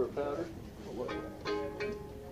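A fiddle sounding a few short notes, then holding one steady note from about a second in.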